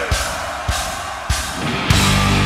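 Live drum count-in: four heavy drum hits about 0.6 s apart over a high hiss of cymbals, leading straight into the band's heavy guitar riff, which crashes in at the very end.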